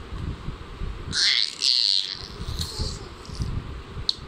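A baby's short high-pitched squeals about a second in, over low uneven rumbling and bumping.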